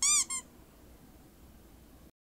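Pomeranian puppy giving two short, high-pitched squeaky whines, the first longer, each rising and falling in pitch.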